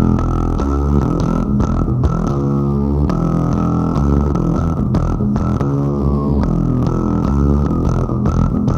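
Electric bass guitar playing a run of quickly changing notes, with a dull tone and a few sharp clicks among them.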